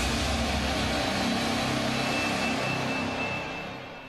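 News-programme graphics sting: a whooshing burst of music that holds a low chord with a wide hiss over it, then fades out over the last second.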